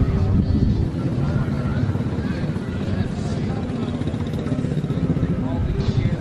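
Steady low rumble of an engine running, with voices in the background.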